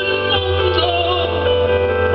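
Live progressive rock band playing: held keyboard chords over a steady low bass, with a wavering melody line above.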